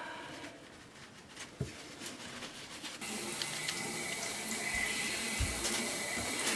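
Bathroom sink tap running, with water draining steadily down through the freshly reassembled plastic P-trap, starting about halfway through. It is a test for drips at the newly tightened P-trap joints.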